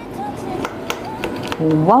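A knife cutting through baked cheese-topped chicken breast in a foil-lined pan, giving a few faint clicks, over soft background music.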